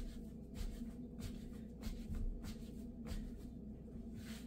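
Pizza dough being kneaded by hand on a flour-dusted countertop: dry rubbing and soft pressing strokes, folding and pushing the dough down, about every half second, over a steady low hum.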